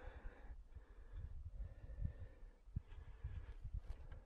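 Wind buffeting the camera microphone: a faint, irregular low rumble with occasional soft thumps.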